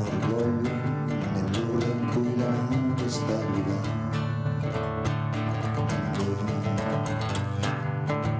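Solo guitar playing a song's instrumental passage live, steady strummed and picked chords with no voice.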